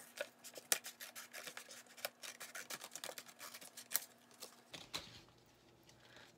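Scissors cutting through a paper plate: a run of quick, irregular snips and crackles of the paper that stops about five seconds in.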